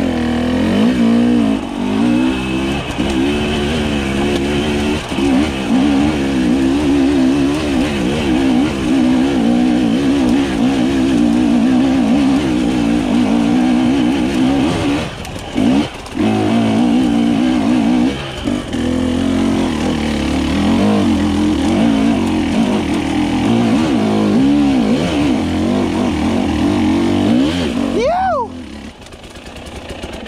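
Husqvarna TE300i two-stroke enduro engine pulling hard up a steep, rocky hill climb, the throttle opening and closing over and over. It lets off briefly about halfway and again a few seconds later, and near the end gives one quick rev before dropping away quieter.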